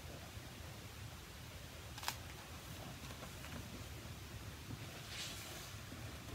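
Quiet room tone with faint handling of a hardcover picture book as it is lowered: one sharp click about two seconds in and a soft rustle near the end.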